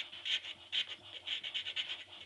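Small hand file stroked back and forth over a Burmese blackwood pistol grip held in a bench vise: a quick run of dry scraping strokes, two or three a second.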